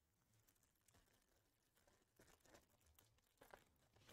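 Near silence, with faint crinkling and rustling of a trading-card pack's foil wrapper being handled and torn open, a few soft rustles in the second half.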